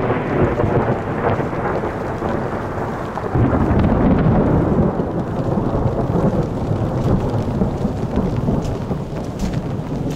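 Steady rain with a long low rumble of thunder that swells about three seconds in and rolls on for several seconds.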